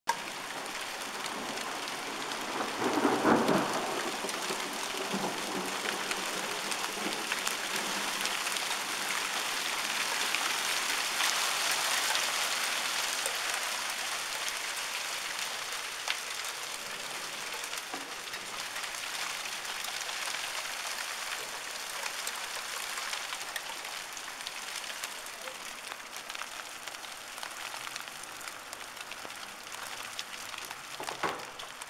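Heavy rain mixed with hail pelting a paved path and lawn, a steady dense hiss that swells about ten to thirteen seconds in. A brief louder, lower burst comes about three seconds in.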